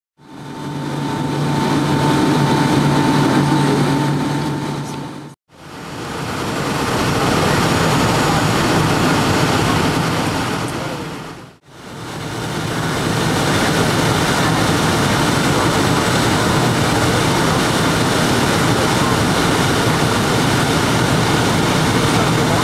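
Steady cabin noise of a Boeing 757-200 on approach: jet engine and airflow noise heard from inside the cabin. It fades out and back in twice, and a steady low hum with a higher tone runs through the first few seconds.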